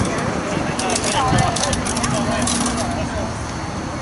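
Distant shouting and talking of rugby players and spectators over steady outdoor background noise, with a scatter of faint crackles in the middle.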